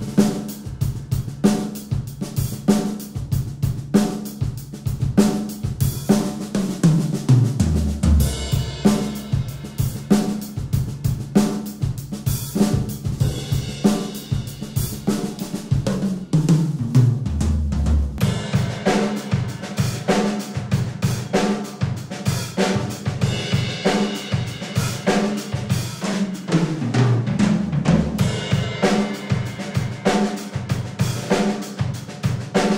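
Pearl Decade Maple drum kit played in a steady groove on snare, bass drum, hi-hat and Zildjian cymbals, picked up by two overhead microphones and a bass drum mic. Three times, about seven, sixteen and twenty-six seconds in, a tom fill rolls down from the small toms to the floor toms.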